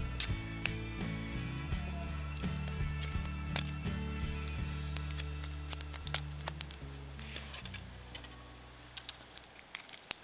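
Scissors snipping through packing tape, a run of short sharp clicks, over background music that fades out about eight seconds in.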